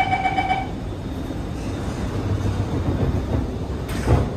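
Alstom Movia R151 train's door-closing warning: a rapidly pulsing electronic beeping that stops about half a second in, over the car's steady low hum. The doors then slide shut and meet with a knock at the very end.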